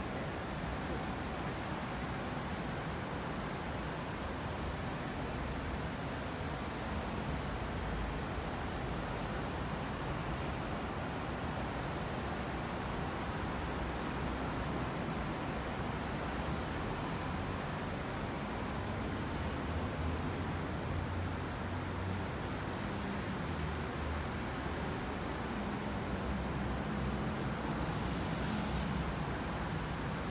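Steady rain falling on wet paving, a constant hiss, with the low rumble of street traffic underneath.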